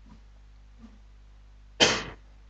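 A single short cough near the end, over a low steady hum.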